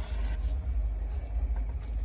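Crickets chirping steadily over a loud, low rumble on the microphone.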